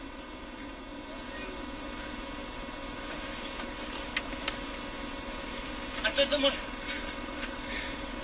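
Ford Focus WRC rally car's engine idling steadily, heard from inside the cockpit after a crash into a tree, with two light knocks a little past the middle. A man's voice says "no" near the end.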